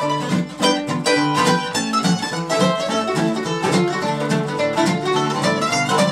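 Mandolin and acoustic guitar playing an instrumental break in a honky-tonk country song, a quick run of plucked notes over the strummed guitar, with no singing.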